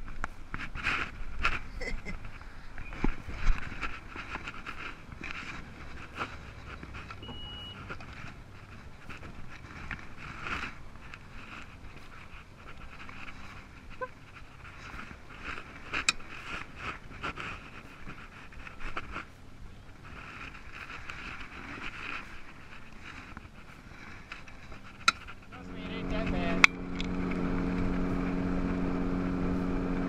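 Indistinct talking and a few sharp knocks, then near the end a bass boat's outboard motor starts running with a steady low hum as the boat gets under way.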